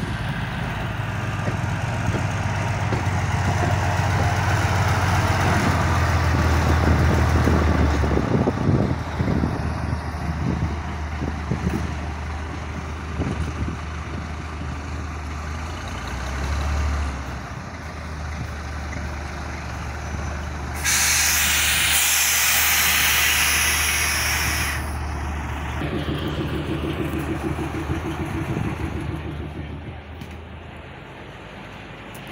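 Diesel engine of the small locomotive X217 running steadily as the train moves, its note lifting briefly about sixteen seconds in. About twenty-one seconds in comes a loud hiss of released air lasting about four seconds, typical of the train's air brakes.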